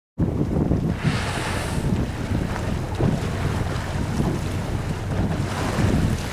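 Wind buffeting the microphone aboard a boat at sea, a steady low rumble over the wash of choppy water. A brief hiss stands out about a second in.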